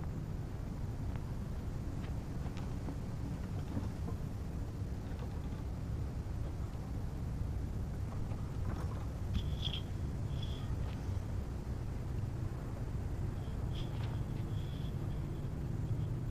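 Steady low rumble of wind buffeting a ground-level microphone, with a few brief high-pitched chirps about halfway through and again near the end.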